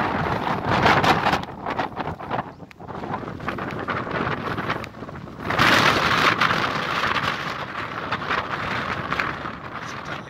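Wind buffeting the microphone in uneven gusts, with a strong gust about five and a half seconds in.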